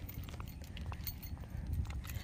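Faint footsteps on a concrete road over a low rumble of wind on the microphone.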